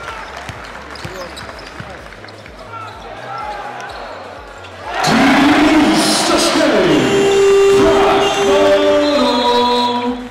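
Basketball game sound in an arena: a ball being dribbled on the court under crowd noise. About halfway through, the crowd gets much louder, with steady held tones sounding over it.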